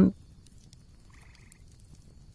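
Faint background ambience with a short, faint trilling animal call about a second in and a weaker one near the end.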